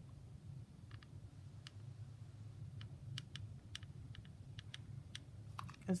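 Faint, irregular small clicks from a hot glue gun and a clear plastic shaker dome being handled as hot glue is run around the dome's edge, over a steady low hum.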